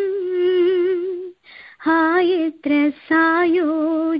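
A woman singing a devotional song solo and unaccompanied, her held notes wavering with vibrato. She breaks off for a breath about a second and a half in, then carries on in short phrases.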